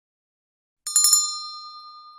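Subscribe-button sound effect: a quick run of mouse clicks a little under a second in, then a single bell ding that rings on and slowly fades.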